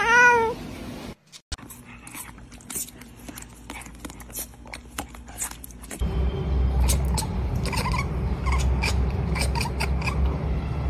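A cat's short meow at the very start. After a brief break, a second cat makes a run of short clicks and brief chirps, louder in the second half over a low rumble.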